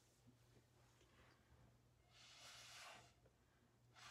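Faint breath blown through a drinking straw onto wet pouring paint: a soft airy rush lasting about a second, starting just past halfway through. Under it is a steady low hum.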